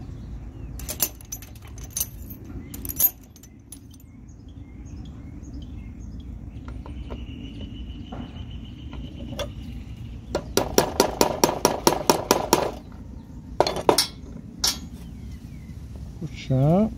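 A small metal tool clicks and taps against a cast lead toy-cannon wheel while the hole in the wheel's hub is cleared out. About ten seconds in comes a quick run of scraping strokes, roughly six a second for two seconds, followed by a few more clicks.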